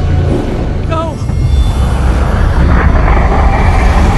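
Film sound mix for a magic power-up: a deep, steady rumble with a brief wavering voice-like note about a second in. From about two seconds in, a noisy swell rises as the magical energy builds.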